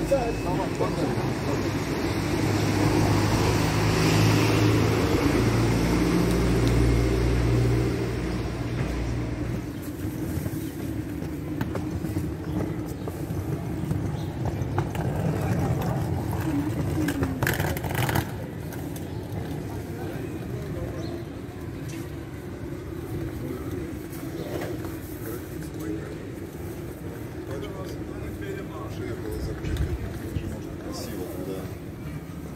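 Street ambience with a low engine rumble from a vehicle through the first nine seconds or so, then quieter street noise with indistinct voices of people nearby.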